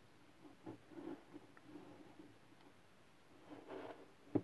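Faint handling of tarot cards on a table: soft taps and rustles as cards are drawn from the deck and laid down, with a slightly louder brushing sound near the end as a card is slid into place.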